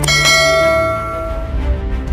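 A single bright bell chime struck just after the start, its tones ringing out and fading over about a second and a half, over a low steady music bed.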